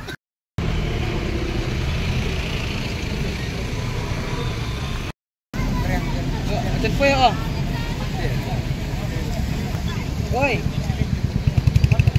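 Roadside traffic on a highway: a steady low rumble of vehicles, with short bursts of bystanders' voices about midway and again near the end. The sound cuts out completely twice for a moment.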